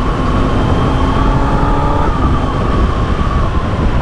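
Kawasaki ZX-10R inline-four engine running at a steady cruise, a steady whine over heavy wind noise on the microphone.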